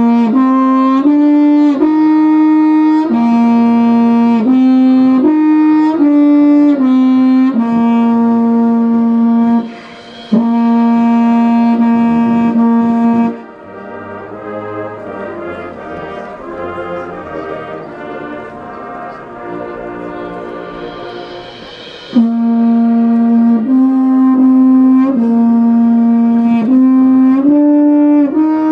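Marching band brass section playing slow, loud held chords that change every second or so. Just before halfway the band drops to a much softer passage for about eight seconds, then the full brass comes back in.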